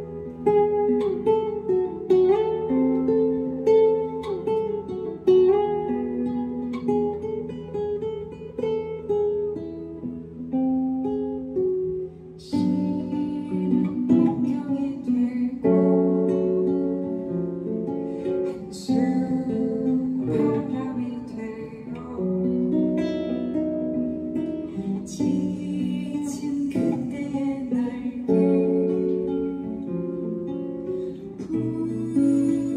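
Live acoustic guitar playing a song with distinct plucked notes, and a woman's singing voice coming in about twelve seconds in.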